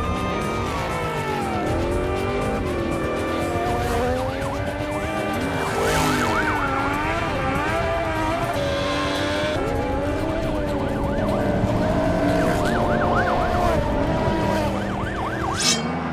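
Vehicle engines revving up and down with tyres skidding and a police siren wailing, mixed with music.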